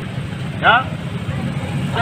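A motor vehicle engine idling as a steady low hum.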